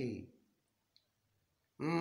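A man's speaking voice trailing off at the end of a word, then a pause of near silence broken by one faint, short click about a second in, before his speech starts again near the end.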